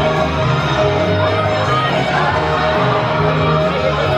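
Loud pop music played over a venue PA system, with a steady bass line and a long held note.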